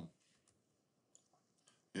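A few faint computer mouse clicks, scattered over about half a second, in near silence.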